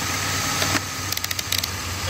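Car engine idling steadily, with a quick run of small sharp clicks a little after a second in as a multimeter's rotary selector dial is turned through its detents.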